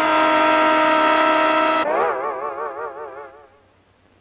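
Cartoon sound effect of a loud horn blasted right at the ear: one steady, blaring note for about two seconds, which then breaks into a wobbling, wavering tone that fades away.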